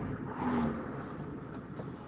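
Faint, steady background noise on a videoconference audio line during a pause in speech, with no distinct event.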